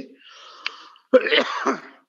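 A man's breath sounds: a faint wheezy breath in with a small click in the middle, then about a second in a loud, harsh clearing of the throat.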